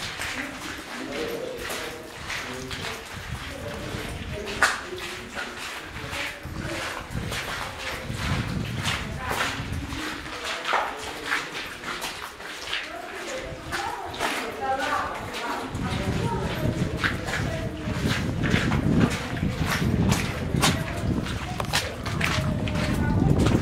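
Footsteps and irregular sharp taps inside a wet lava tube, with indistinct voices throughout. About two-thirds of the way in, a louder low rumble joins.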